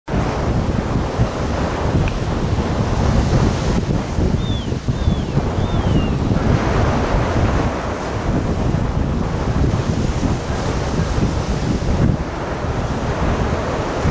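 Strong wind buffeting the microphone over a choppy sea with waves washing, a loud, uneven rumble. From about four to six seconds in, three short, high, falling chirps sound over it.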